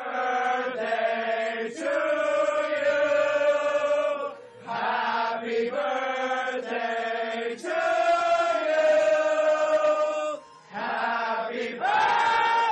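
A group of people singing or chanting together in long held notes, in phrases a couple of seconds long with brief breaks between them.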